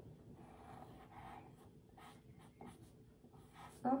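Pencil tracing lines over a paper print, a faint scratching of many short, irregular strokes.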